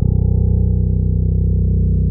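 Pedulla Rapture five-string electric bass ringing on one low plucked note, held steadily at an even pitch and level.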